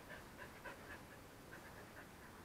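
Faint small sounds from a dog close to the microphone, a few soft short noises over near silence.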